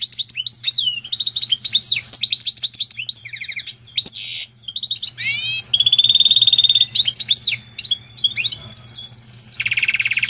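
A canary × European goldfinch hybrid (pintagol) singing a long, varied song of rapid trills and sweeping notes, with one long held note about six seconds in and a buzzy rattle near the end.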